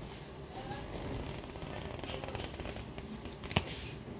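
Sheets of flipbook paper being handled, rustling softly, with one sharp click about three and a half seconds in.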